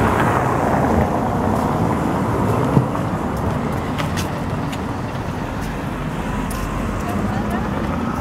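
Steady city street noise of traffic on wet roads, with a low rumble on the microphone and a few faint clicks scattered through.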